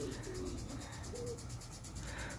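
A dove cooing in short low notes, one at the start and another a little after a second in, over a steady high hiss.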